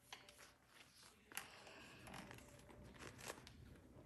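Faint rustling and a few soft clicks of braided rope being handled and pulled through itself while an overhand knot is tied.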